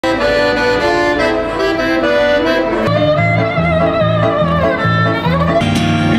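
Accordion playing held chords. About three seconds in, the music changes to a wavering melody line over a bass that pulses a few times a second.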